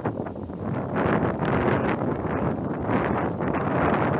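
Loud, steady rushing noise of wind buffeting the microphone, starting suddenly.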